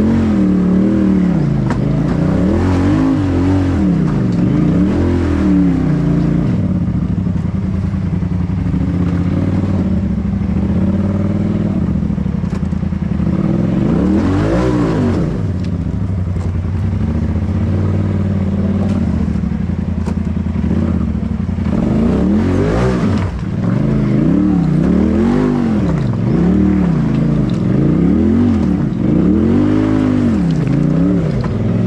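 Polaris RZR side-by-side engine revving up and falling back in repeated throttle blips as it crawls over rocks, with steadier running in between. Scattered knocks and clatter from the rocks underneath.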